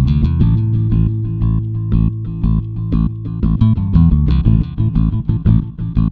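Background music: bass guitar and guitar over a steady beat.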